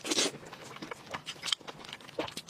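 Close-miked eating: a loud tearing bite into sticky, sauce-glazed pork belly on the bone right at the start, followed by quieter wet chewing and smacking clicks, one sharper click about one and a half seconds in.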